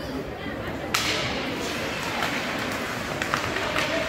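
Ice hockey play in an indoor rink: a sharp puck crack about a second in that rings on in the arena, followed by a few lighter stick-and-puck clicks, over a steady murmur of spectators' voices.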